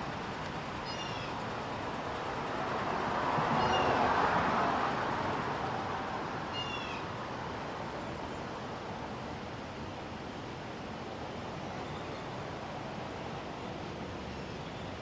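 Outdoor street ambience: a steady background hum that swells and fades as a vehicle passes a few seconds in. Three short, faint, high chirps come through, about a second in, around three and a half seconds, and near seven seconds.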